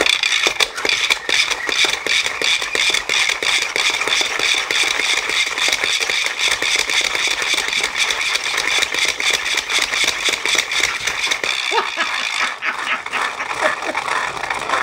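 A hand-pumped, 3D-printed spinning-top mechanism spins an electric drill motor as a generator through plastic gears and a flywheel. It makes a fast, steady clicking from the ratchet and gear teeth under a whirring hum, which eases off near the end.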